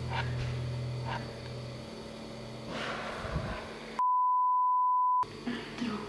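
A steady low hum that stops about two seconds in, then a single pure censor bleep just over a second long, about four seconds in, blanking out all other sound.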